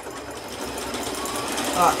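Janome sewing machine running steadily, sewing a dense overlock stitch through fabric with a fringe foot at a very short stitch length, slowly growing louder.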